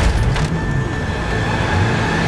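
Trailer sound design: a sharp hit right at the start, then a loud, dense roar with low tones under it and a rising sweep building near the end.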